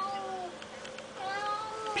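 Ragdoll cat meowing twice, softly, at a moth it cannot reach: frustrated complaining at prey out of reach. The second meow comes about a second in.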